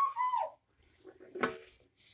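A boy's brief high-pitched vocal whoop that falls away at the end, then a shorter, fainter vocal sound about a second and a half in.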